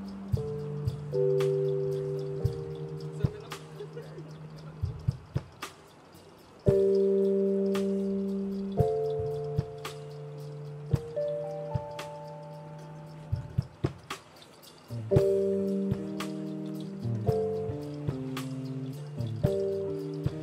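A live band playing an instrumental passage of a song. Held chords ring and slowly fade, changing every few seconds, with sparse light ticks over them.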